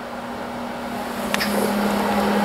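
Electric space heater running on low with its fan on, a steady low hum over a hiss of moving air, getting a little louder towards the end. It keeps running while lying flat because its tip-over safety switch has been bypassed. A single short click comes just past halfway.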